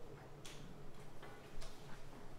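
A few soft clicks and paper rustles from song sheets being handled on music stands, over a faint steady low hum.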